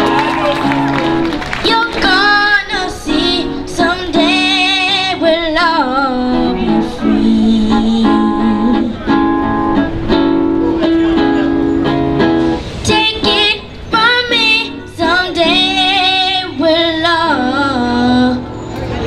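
A young girl singing a song into a microphone over an instrumental backing, her voice wavering with vibrato on the held notes, with short breaths between phrases.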